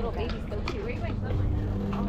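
Indistinct chatter of several voices over a steady low hum.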